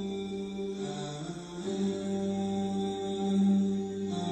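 Slow vocal chant-like background music, a voice holding long drawn-out notes that change pitch only a few times.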